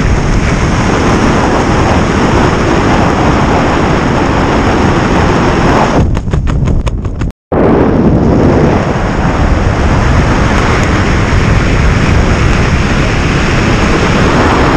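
Loud wind buffeting the microphone of a skydiver's hand-held camera. About six seconds in the noise stutters and briefly cuts out, then the wind noise resumes just as loud.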